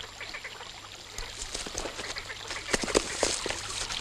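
Scattered short clicks and brief squeaks over a steady low hum, growing busier after about a second.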